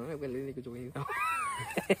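A young person's voice speaking non-English words in a flat, steady tone, then, about a second in, a high squealing voice that rises and falls. A few short clicks or laughs come near the end.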